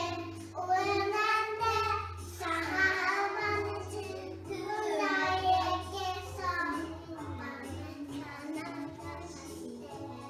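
A children's choir singing a Christmas song with instrumental accompaniment, playing from a television.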